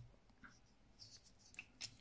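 Plastic parts of a Transformers action figure being handled and folded during its transformation: faint rubbing with a few light clicks, the two sharpest shortly before the end.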